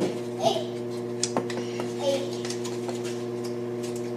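A steady hum from a kitchen appliance, with a few light clicks and knocks from things being handled at the counter.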